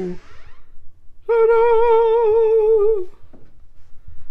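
A man's voice singing a long held note with a wide, even vibrato, starting about a second in and stopping near three seconds. At the very start the end of a lower held note cuts off.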